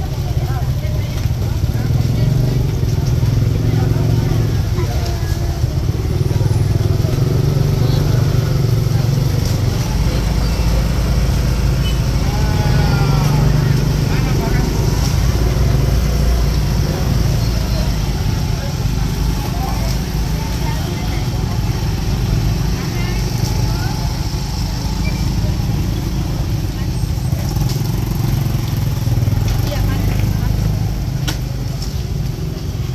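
Busy street-market ambience: many people talking at once, with motorcycle engines running and passing close by.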